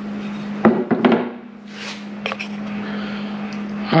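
Wooden corbel pieces being handled on a plywood workbench: a few sharp wooden knocks and a short rub, over a steady low hum.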